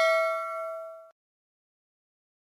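Notification-bell sound effect of a subscribe-button animation: a bell ding with several steady tones ringing out and fading, cut off suddenly about a second in, then silence.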